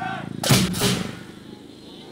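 Lion dance drum and hand cymbals struck together in a single loud accent about half a second in, the cymbals ringing out and fading over the next second before the drumming resumes.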